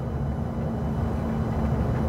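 Road and engine noise inside a vehicle cruising at highway speed: a steady low rumble with a faint, steady hum.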